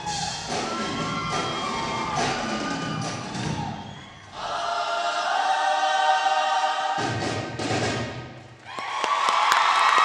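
A large show choir singing a full-voiced number. A long chord is held from about four seconds in, and a louder sustained chord comes near the end, with a few thuds from the choreography.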